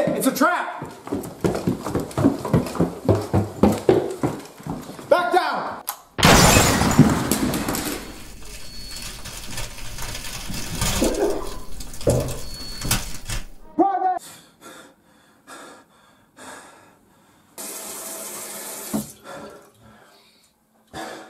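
A man's voice making wordless rhythmic sounds for about six seconds, then a sudden loud crash-like noise that trails off over several seconds, followed by a short vocal cry.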